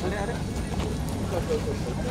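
Indistinct voices of people talking off-mic, over a steady low background rumble.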